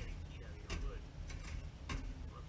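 A metal tool knocks and scrapes inside a wire-mesh ash sifter on a metal ash bucket, sifting wood-stove ashes. There are four sharp metallic knocks about 0.6 s apart, each with a brief ring.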